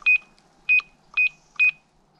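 Gate-entry security keypad beeping once per key press as a four-digit code is entered: four short, high, identical beeps about half a second apart.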